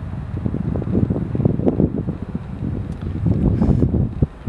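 Wind buffeting the microphone: an uneven, gusty low rumble that grows a little stronger near the end.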